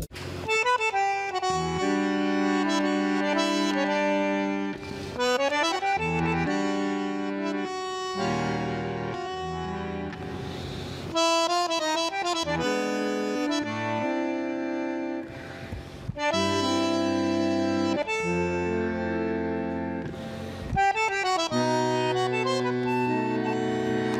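Bandoneon playing tango, a run of held chords whose notes change every second or two, with a few short breaks in the phrasing.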